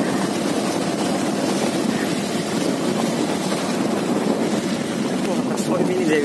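Steady, noisy rumble of a vehicle travelling along a dirt road, with wind buffeting the microphone.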